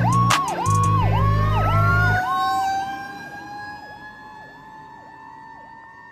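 Fire truck passing under emergency response: two long, loud air horn blasts in the first two seconds over a siren that dips in pitch about twice a second, with a second siren tone slowly rising in pitch. Everything fades steadily as the truck moves away.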